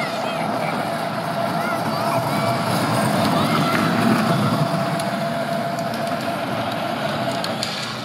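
Electric motor of a child's Radio Flyer ride-on go-kart running with a steady whine, over the hiss of its tyres on wet asphalt. It grows louder towards the middle and eases off near the end.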